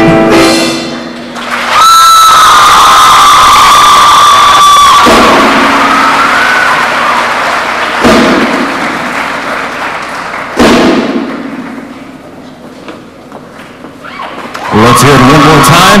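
Audience applauding and cheering at the end of a show choir's song, with one long high-pitched note held over the clapping for about three seconds near the start. The applause fades away, there is a single thump about ten seconds in, and a man's voice over a PA comes in near the end.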